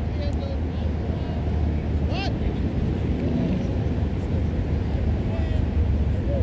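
Players' distant shouts and calls across an open field, including one sharp rising shout about two seconds in, over a steady low rumble.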